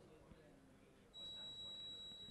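Near silence for the first half, then a steady high-pitched electronic beep starts a little past halfway and holds.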